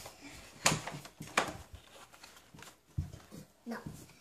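Cardboard toy box being handled and opened: a few sharp knocks and rustles of cardboard and plastic packaging, the two loudest about two-thirds of a second and a second and a half in.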